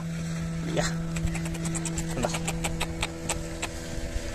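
Many small sharp clicks and taps of a hand working among granite boulders and a cast net while freeing a caught fish. A steady, engine-like hum with several tones runs underneath.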